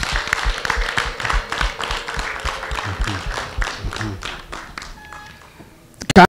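Audience applauding, many hands clapping at once; the clapping thins out and fades away over the last two seconds.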